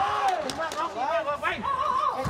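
Several men shouting from ringside, their drawn-out calls overlapping as they urge on Muay Thai fighters, with a few sharp smacks of strikes landing about half a second in.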